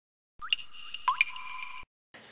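Logo intro sound effect: two quick rising blips, about half a second and a second in, over a held electronic tone that cuts off abruptly near the end.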